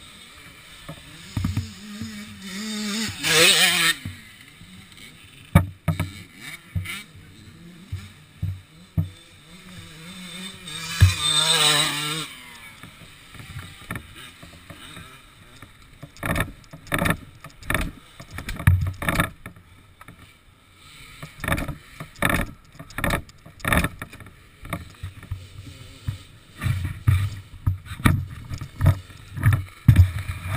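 A Honda CR250 single-cylinder two-stroke is kicked over twice, about three seconds in and again about eleven seconds in. Each kick is a roughly one-second spin with a pitch that rises and falls, and the engine does not catch. In the second half there is a run of sharp knocks, about two a second.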